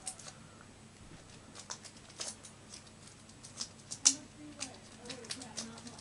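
Faint, scattered crinkles and clicks of a foil Pokémon booster pack being handled, the sharpest about four seconds in.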